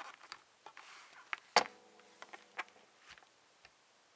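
Scattered small clicks and knocks of hands handling a Roland GK-2 guitar synthesizer pickup unit and its multi-pin cable socket, with one sharper click about a second and a half in followed by a brief faint ringing tone.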